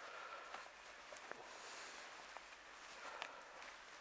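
Near silence: a faint background hiss with a few soft, scattered clicks and light rustles.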